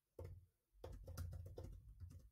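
Faint typing on a computer keyboard: a couple of keystrokes early on, then a quick run of about half a dozen keystrokes in the second half.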